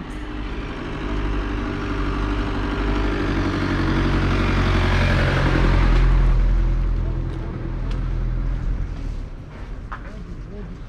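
A motor vehicle's engine running close by, its sound growing louder to a peak about six seconds in and then fading away.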